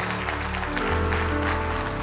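Stage keyboard holding soft sustained chords, with a low bass note coming in about a second in, under congregation applause.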